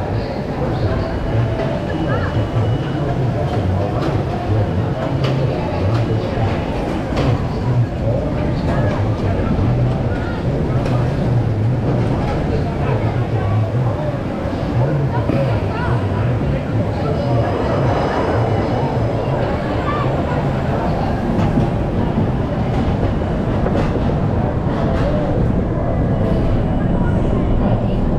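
Amusement park ambience around a roller coaster train stopped on its final brake run and then creeping into the station: a steady low rumble with voices in the background.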